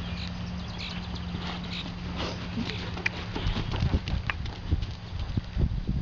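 Hoofbeats of a horse trotting on arena sand, growing louder from about three seconds in as it passes close.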